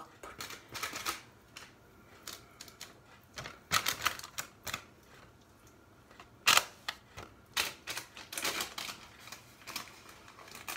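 Baking paper lining a cake tin crackling and rustling in short, irregular crackles as it is handled, loudest about six and a half seconds in.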